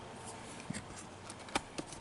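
Faint handling of cardboard CD sleeves and the box-set box: soft rustling with a few light clicks and taps in the second half.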